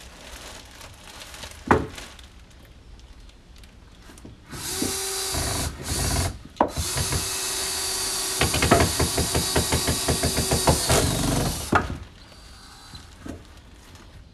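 Cordless drill driving a screw into a wooden deck board: two short bursts, then a run of about five seconds with a rapid rhythmic clatter in its latter half, stopping about two seconds before the end. A single knock comes about two seconds in.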